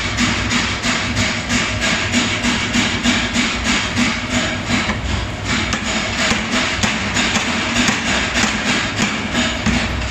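Power hammer forging a red-hot steel axe blank, its ram striking the hot metal on the die in a rapid, even train of blows, several a second.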